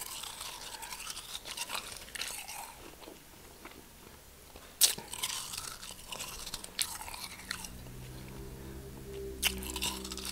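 Close-up eating of a hard-packed snowball: crisp bites crunching through it about five seconds in, again about seven seconds in and near the end, with grainy crunching chews in between.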